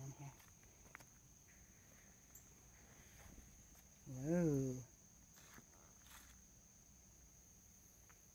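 Crickets trilling steadily and thinly in the background, with a few soft footsteps on leaf-strewn ground.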